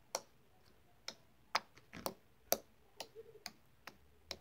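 Homemade slime being pressed and poked with a finger, trapped air popping out in an irregular run of about ten sharp clicks and pops.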